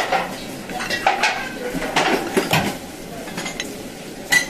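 Clatter of metal utensils against ceramic dishes and pans in a ramen-shop kitchen: a series of sharp clinks, some ringing briefly.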